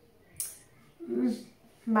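A woman's short closed-mouth hum, about a second in, after a faint click; her speaking voice starts right at the end.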